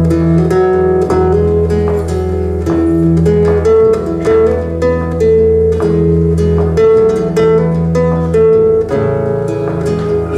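Instrumental break: a nylon-string classical guitar picks a melody of single plucked notes over sustained low notes from an acoustic bass guitar, with no vocals.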